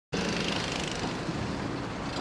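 Steady engine and road rumble heard inside the cabin of an off-road vehicle as it drives.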